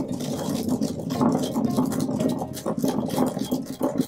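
Stone pestle pounding and grinding black peppercorns in a granite mortar: a dense, uneven run of gritty crunches and stone-on-stone scrapes as the seeds crack into powder.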